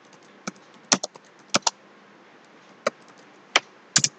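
Computer keyboard being typed on slowly: about eight separate keystrokes at an uneven pace, some in quick pairs.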